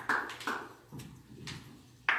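The last few scattered hand claps of a small audience's applause, dying away into a quiet room.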